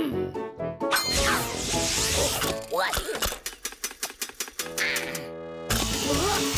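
Cartoon background music and sound effects: in the middle, a rapid run of clicks, about nine a second, from a wind-up chattering-teeth toy clacking, followed by a brief buzzing tone before the music comes back.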